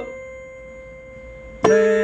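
Piano melody: a held note rings and fades away, then a new lower note is struck about a second and a half in.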